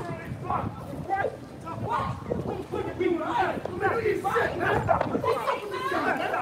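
Indistinct voices of several people talking outdoors, with chatter throughout and no single clear speaker.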